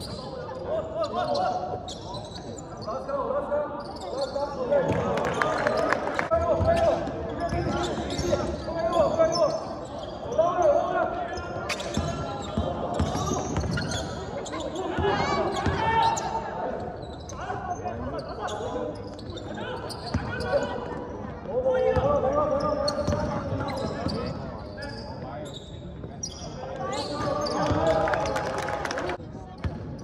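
Indoor basketball game: a basketball bouncing on a hardwood court as it is dribbled, with voices calling out across the hall throughout.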